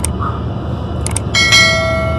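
Subscribe-button animation sound effect: quick pairs of mouse clicks at the start and about a second in, then a bright bell ding that rings on as it fades.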